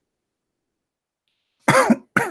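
A man coughing once, sharply, near the end of a near-silent stretch.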